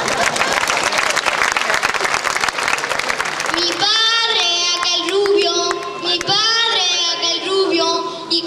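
Audience applauding at the close of a sung verse, fading out about four seconds in. A child's voice then takes over, singing a wavering melody.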